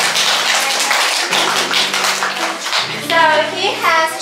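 A room of children and adults clapping their hands in a round of applause that dies down about three seconds in.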